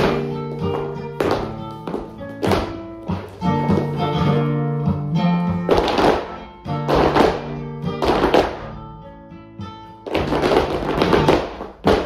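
Flamenco guitar music in soleá rhythm, with a group of dancers' flamenco shoes striking the floor in footwork. The heel and toe strikes come in several fast, dense runs, the thickest near the end.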